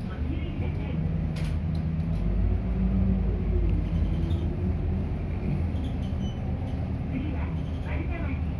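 Interior sound of an Isuzu city bus under way: the diesel engine's low drone swells about two seconds in as the bus accelerates, with a faint gliding whine, then eases off.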